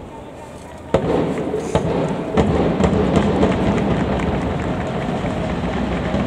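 Football stadium crowd noise that jumps sharply louder about a second in and stays up, with many quick sharp claps in the mix.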